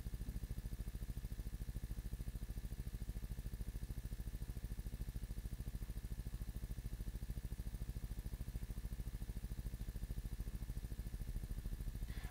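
Steady low hum with a fast, even pulse, with no distinct screwdriver clicks standing out above it.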